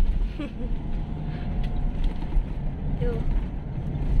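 Steady low road and engine rumble heard from inside the cabin of a moving Toyota Innova, with brief snatches of voice.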